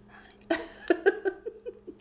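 A woman's short laugh, broken into quick giggling bursts about half a second in and lasting about a second and a half, with a sharp clink of a fork on a plate.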